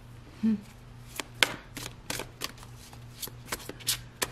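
A deck of tarot cards being handled and shuffled by hand: from a little over a second in, a quick irregular run of sharp card clicks and snaps.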